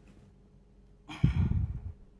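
A sigh-like breath out into a close microphone about a second in, lasting under a second, with a low rumble of air hitting the mic.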